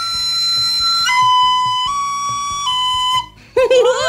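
A plastic recorder being blown. It plays one long held high note, then three shorter notes: lower, a little higher, then lower again, stopping a little after three seconds in. Voices and laughter begin near the end.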